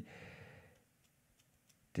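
A man's faint breath out as he pauses in speaking, fading away within the first second, then near silence until his speech starts again at the very end.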